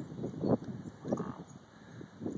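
Dog wading through shallow lake water, making a few soft splashes about half a second apart.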